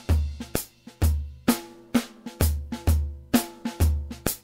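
Sampled acoustic drum kit from the EZdrummer 2 plugin playing back a Latin Cuban groove: deep kick-drum hits at uneven spacing, with snare or rimshot and cymbal strokes between them.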